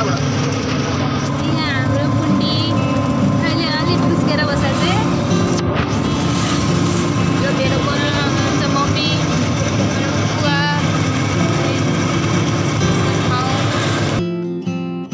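Riding in an open-sided rickshaw: steady road and wind noise with voices chattering and music playing underneath.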